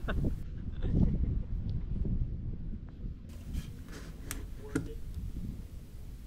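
Wind rumbling on an outdoor microphone, strongest in the first two seconds, with faint voices and a few light clicks and taps midway.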